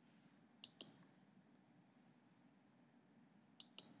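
Near silence, room tone with two pairs of faint, sharp clicks: one pair less than a second in and another just before the end.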